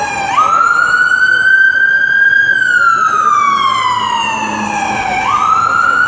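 Emergency vehicle siren wailing loudly. Its pitch jumps up sharply just after the start, falls slowly over about three seconds, then jumps up again about five seconds in.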